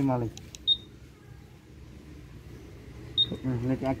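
Two short high beeps about two and a half seconds apart from a Honda PCX 160 scooter's anti-theft alarm, the first just after a light click. The beeps come from the alarm while it is armed.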